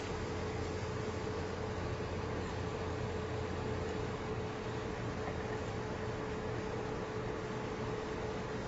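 Steady whir of electronics cooling fans, with a thin steady tone and a low hum underneath.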